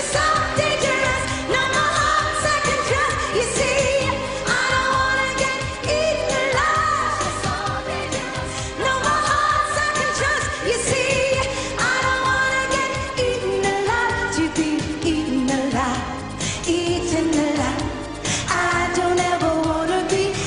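A female lead vocalist singing a pop song live over band accompaniment with a steady beat, holding long notes.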